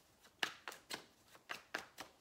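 A deck of tarot cards being shuffled by hand: several short, sharp, irregular snaps of the cards.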